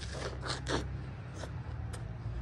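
A person biting into and chewing a crisp apple: a couple of short crunches about half a second in, then softer chewing clicks.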